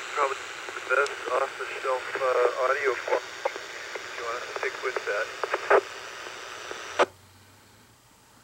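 A voice received over FM two-way radio, thin and narrow with steady hiss behind it, from a Yaesu FTM-400DR transceiver through its external speaker. About seven seconds in the transmission ends with a short burst of noise and the hiss cuts off as the squelch closes.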